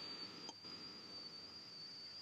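Faint steady high-pitched whine over a low hiss, in a pause between speech.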